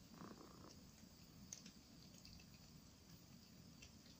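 Very faint sounds of a cat chewing and mouthing a mouse: a short rustling burst just after the start and a sharp click about a second and a half in, over a faint steady high insect hum.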